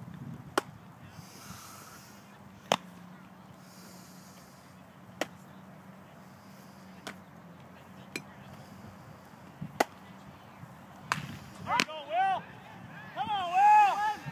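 A baseball popping into leather gloves during a game of catch: seven sharp single smacks roughly every one and a half to two and a half seconds, some louder than others. Near the end a high voice calls out loudly, its pitch rising and falling.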